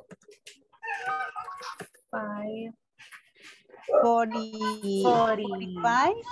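Speech only: voices talking in short phrases that the recogniser did not write down.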